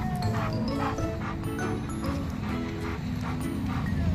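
Background music, with a cocker spaniel whining and giving a series of short yips over it.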